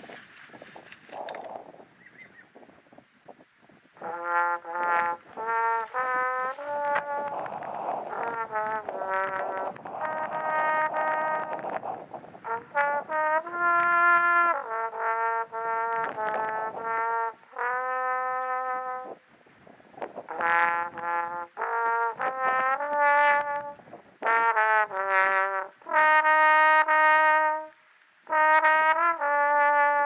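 Trombone played solo, a slow melody of separate held notes that starts about four seconds in and runs in phrases with short breaks.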